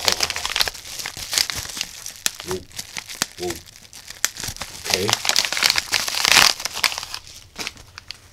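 Plastic bubble wrap being crinkled and pulled open by hand: a dense run of sharp crackles and rustles, loudest about six seconds in.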